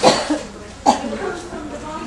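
A person coughing twice, the coughs about a second apart, among talk.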